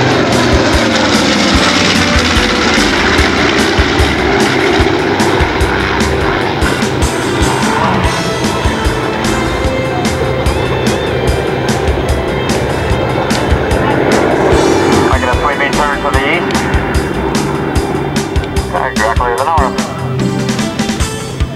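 Loud piston-engine drone from a low formation pass of a B-25 Mitchell's twin radial engines and two single-engine World War II fighters, the pitch dropping in the first couple of seconds as they go past.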